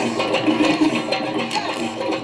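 Drumming, repeated drum hits over steady music.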